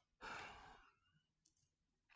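A man's audible breath, a short sigh-like rush of air that starts about a quarter-second in and fades away in under a second.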